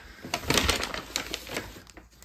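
Hands handling small electronic parts in a small plastic parts bag: a quick, irregular run of clicks and crinkles.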